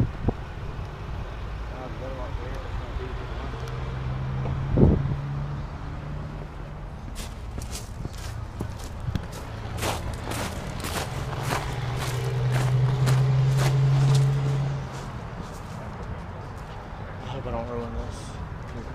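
Footsteps and camera-handling clicks over a steady low hum of vehicle engines and traffic. The hum swells for a few seconds near the middle. A single sharp knock comes about five seconds in.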